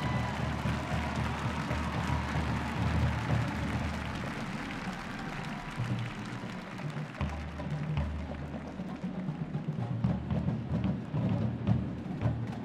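A military drum and bugle corps drum line plays a marching cadence, led by deep, even bass drum strokes. The bass drums drop out for a couple of seconds around the middle, then come back in.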